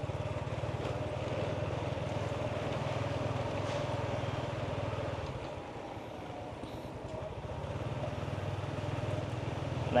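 Small motorcycle engine running steadily while riding, with a fine even pulse to its hum; about five and a half seconds in it drops lower for a couple of seconds as the throttle eases, then picks up again.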